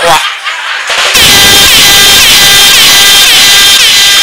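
A rapid series of air-horn blasts, about two or three a second, starts about a second in, over loud audience clapping and cheering.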